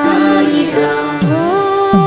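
Devotional music as an outro: a voice singing a sliding, ornamented melody over a steady drone.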